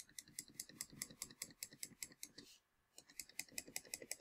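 Rapid, faint computer mouse clicks, about seven a second, clicking out a dashed line dash by dash, with a short pause about two and a half seconds in.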